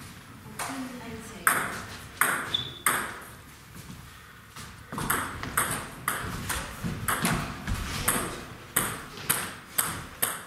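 A table tennis ball clicking sharply off bats and table in a rally, about two hits a second from about halfway through, after a few single clicks in the first seconds.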